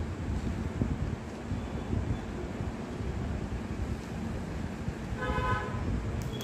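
Steady low rumbling background noise, with a short horn toot lasting about half a second, five seconds in.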